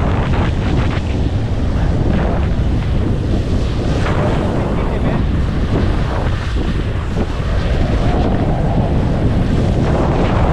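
Strong wind buffeting the microphone while skiing downhill, a steady heavy rush. Skis hiss and scrape over the snow, with a few brighter scrapes early on, about two seconds in and about four seconds in.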